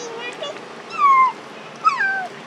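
Young macaque giving several high, whimpering calls that fall in pitch. The loudest comes about a second in and another near the end.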